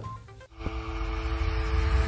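Outro music sting under a logo animation: starting about half a second in, a whoosh with a deep rumble and two held notes swells steadily louder, leading into music.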